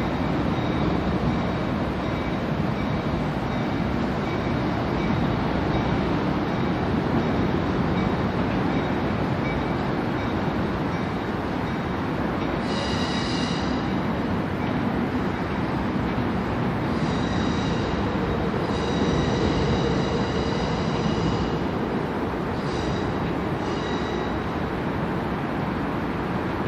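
Amtrak Capitol Corridor passenger train of bilevel cars rolling slowly on the tracks, a steady rumble throughout. High-pitched wheel squeal comes and goes several times in the second half as the wheels grind on curved track.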